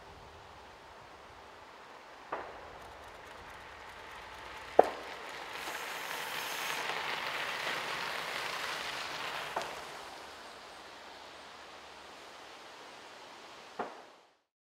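Bicycles passing on a gravel road: tyre crunch on the gravel swells up and fades over about four seconds around the middle. A few sharp clicks punctuate it, the loudest about five seconds in.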